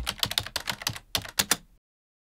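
Computer keyboard typing sound effect: a rapid, uneven run of key clicks, about ten a second, that stops abruptly a little under two seconds in.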